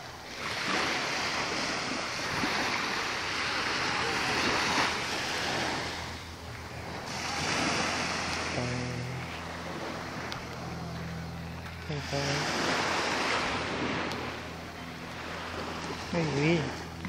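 Small waves washing onto a sandy beach, coming in as repeated swells of surf a few seconds long.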